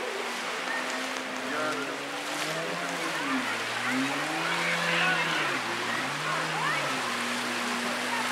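Jet ski engine running and revving as it carves turns on the water. Its pitch dips and rises twice in the middle, then holds steady near the end, over a constant wash of water.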